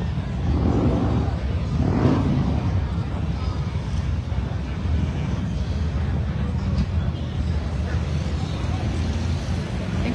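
Steady low rumble of motor vehicles around a busy outdoor lot, with voices of people nearby heard about one and two seconds in.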